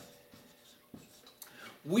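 Felt-tip marker writing on an easel board: faint squeaks and short strokes as the last letters are written, with a man's voice starting just before the end.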